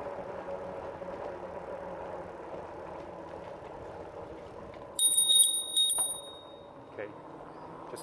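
Bicycle bell rung rapidly, about five quick dings in a second about five seconds in, sounded as a warning before a blind corner. Before it, the steady hum of the moving electric bike.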